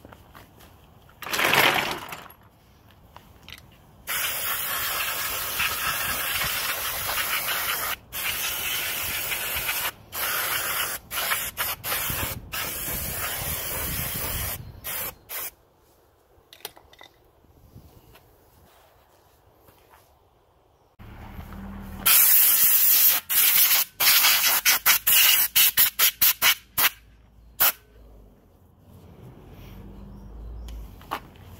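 Aerosol brake cleaner spraying onto a bare rear wheel hub. A short burst comes first, then a long spray of about ten seconds broken by brief pauses, and near the end a run of short, rapid bursts.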